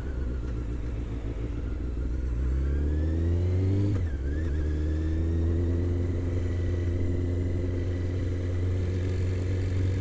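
Honda CBR600 inline-four engine pulling up through the revs, dropping sharply in pitch about four seconds in as it shifts up a gear, then climbing again and settling to a steady cruise. Low wind rumble on the helmet-mounted microphone runs underneath.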